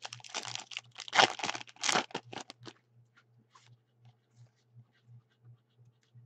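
Foil trading-card pack being torn open, its wrapper crackling and crinkling in a dense run for about the first three seconds. After that there are only faint scattered ticks.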